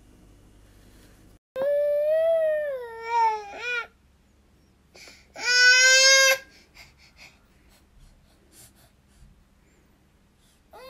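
A baby crying: a long wailing cry that wavers and then falls in pitch, and after a pause a second, shorter cry held on one steady pitch.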